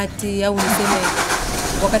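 A motor vehicle's engine close by, coming in as a loud, even noise about half a second in, with a deep rumble near the end, under a woman's voice.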